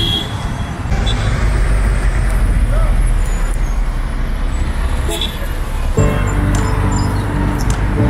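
Road traffic passing on a busy city road: a steady, dense rumble of vehicles. Background music comes in about six seconds in.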